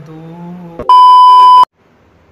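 Censor bleep: a loud, steady, high-pitched electronic beep of under a second, cutting in abruptly right after a drawn-out spoken word and stopping just as abruptly, laid over the audio in editing to blank out a word.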